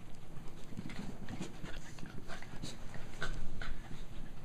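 Pembroke Welsh corgis playing, with quick dog panting and short play noises, a little louder near the end.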